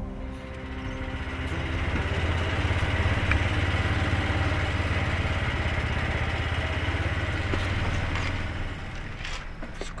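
Golf cart running as it drives along, a steady low engine hum that builds over the first couple of seconds, holds, and eases off near the end.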